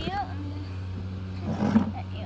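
A steady low machine hum with an overtone, with a short rising vocal sound right at the start and a brief rough noisy burst about a second and a half in.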